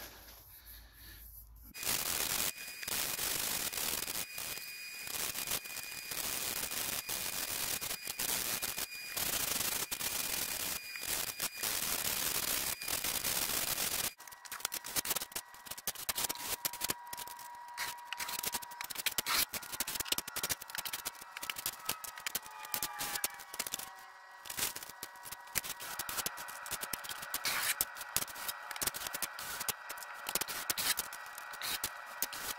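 Hand sanding of dried drywall joint compound on a ceiling patch: rapid, irregular rasping strokes of a sanding block against the compound. The sound changes about halfway through.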